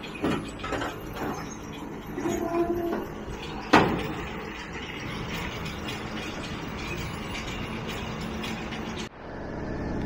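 Tractor and round baler running after dropping a bale, with clunks and a brief hydraulic whine as the baler's tailgate moves, then one loud bang about four seconds in as the tailgate shuts. The engine then runs steadily as the baler pulls away. Near the end the sound cuts to a steadier vehicle rumble.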